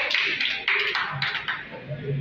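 A short burst of audience clapping that stops about one and a half seconds in.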